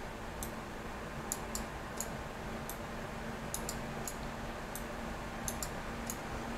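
Computer mouse buttons clicking: about a dozen short, sharp clicks, several in quick press-and-release pairs, over a faint steady hum.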